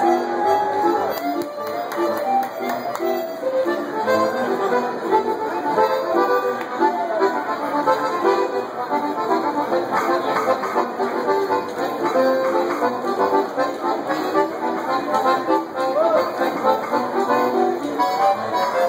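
Piano accordion playing a fast forró pé de serra melody in quick runs of short notes.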